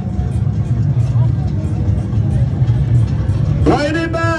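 Dense crowd noise over a heavy low rumble, with faint scattered voices. Near the end a man's voice breaks in with a loud, drawn-out call.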